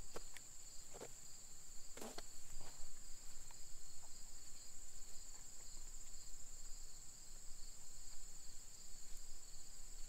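Steady high-pitched chorus of insects, such as crickets, with a few soft knocks in the first three seconds as the rope is handled while a knot is tied.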